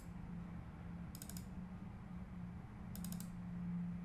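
Computer mouse clicking through folders in a file dialog: three short clusters of clicks, at the start, about a second in and about three seconds in. A faint steady low hum runs underneath.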